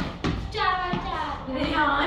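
A wooden cricket bat striking a tennis ball: two sharp knocks about a quarter second apart at the start, followed by a boy's voice.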